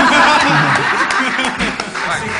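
A group of people laughing together, many voices overlapping loudly.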